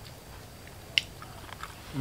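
Soft chewing of a mouthful of boiled beef and rice, with one sharp click about a second in and a few small ticks after it.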